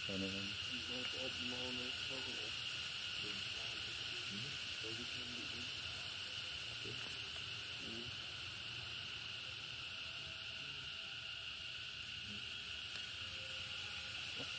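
Insects in the surrounding vegetation making a steady, high-pitched drone. Faint voices talk in the first half.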